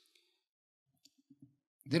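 A pause in a man's speech. It is near silence with a few faint, soft clicks about a second in. His voice resumes just before the end.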